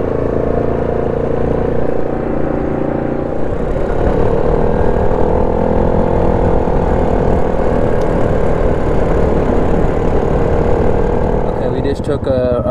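Yamaha 700 ATV's single-cylinder four-stroke engine running under way at a steady pace, easing off briefly about two seconds in and then picking up again.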